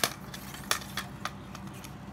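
Light clicks and taps of a telescopic fishing rod being handled, its hard sections and metal guides knocking in the hand: a sharp click at the start, another about two-thirds of a second in, and a few fainter ones after.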